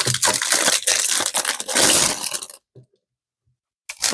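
Clear plastic bag crinkling loudly as a boxed item is pulled out of it. The crinkling stops abruptly about two and a half seconds in.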